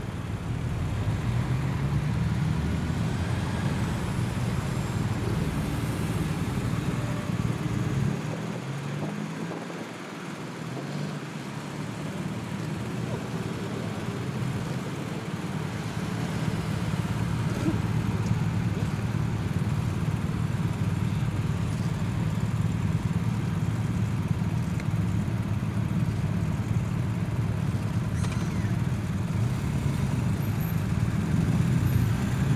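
Police motorcycles passing slowly in a line, their engines running at low revs as a steady low hum that rises and falls as each bike goes by, briefly thinning about nine seconds in.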